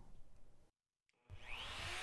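Electric plunge router fitted with a dado bit starting up about a second in. Its whine rises as the motor spins up, then it runs steadily.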